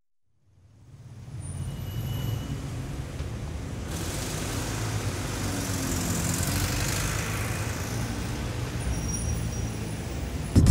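City street traffic, fading in from silence over the first second or so into a steady rumble of passing vehicles, with a brighter hiss from about four seconds in.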